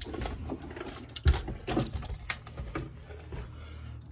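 Irregular knocks and scuffs of someone moving about on a debris-strewn basement floor, the loudest a sharp knock about a second in, over a low steady hum.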